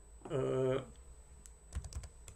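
A few quick key presses on a computer keyboard near the end, typing a page number into a PDF viewer's page box.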